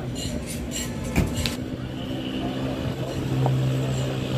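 A motor vehicle's engine running close by, a steady hum that grows louder about halfway through, with a sharp knock about a second in and people talking in the street.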